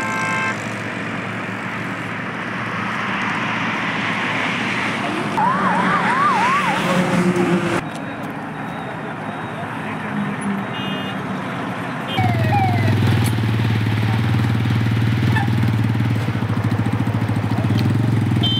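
Roadside highway traffic noise with an emergency-vehicle siren yelping in fast rising and falling sweeps for about two seconds, five seconds in. A vehicle horn sounds briefly at the start, and from about twelve seconds a steady low engine hum takes over.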